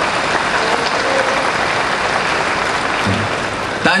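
Large audience applauding, a dense steady sound of many hands clapping that carries on until the speaker's voice comes back in at the very end.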